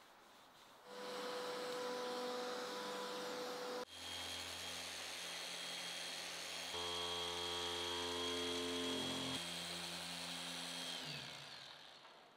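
Small cordless polisher with a foam pad running steadily on a car's light lens, its motor giving a steady whine. It starts about a second in, cuts off abruptly just before four seconds, runs again with a change of note partway through, and winds down with a falling pitch near the end.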